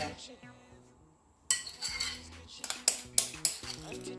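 A spatula scraping and clinking against a bowl and a cake plate while chocolate icing is spread. After a quiet start come repeated short scrapes and taps, beginning about a third of the way in.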